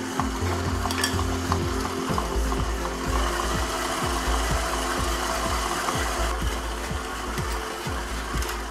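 Red KitchenAid stand mixer running, its beater churning a sandy almond paste and sugar mixture in the steel bowl as egg whites go in. A steady motor hum with a gritty hiss and an even rhythmic churn, growing fuller about two seconds in.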